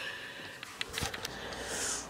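Faint handling noise from the camera being grabbed: a few soft clicks and a light knock about a second in, over low room hiss.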